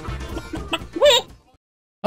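Intro music with a beat, then about a second in a single loud chicken call sound effect that rises and falls in pitch.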